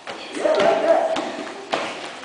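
Kicks striking padded taekwondo chest protectors: a few short, sharp thuds, the clearest one near the end. A voice calls out between the hits.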